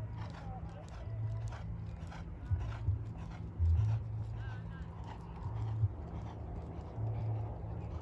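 A horse's hooves striking the sand arena footing in an irregular run of light beats. Under them a low rumble of wind on the microphone comes and goes, with faint voices in the background.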